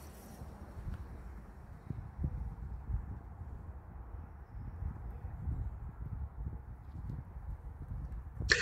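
Faint outdoor ambience: an uneven low wind rumble on the microphone, with a few soft footsteps on concrete.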